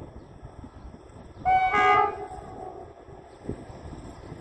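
Locomotive horn of an approaching train sounded once, a short blast of about half a second, about a second and a half in; partway through it drops to a lower note. Wind noise on the microphone is heard throughout.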